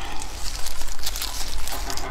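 Disposable plastic gloves crinkling and rustling as hands grab and lift a large braised pork bone, with a dense run of small crackles and clicks.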